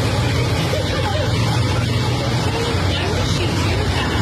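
Steady outdoor street noise with a low traffic rumble, and a faint voice in the background.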